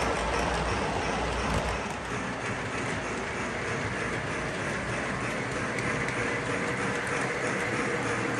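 O gauge three-rail electric model trains running on the track, a steady rolling rumble and clatter of metal wheels on the rails.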